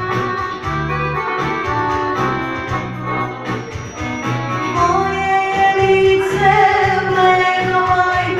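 Amplified music with a steady bass beat and keyboard backing; about halfway in, a woman starts singing into a microphone over it, holding long notes.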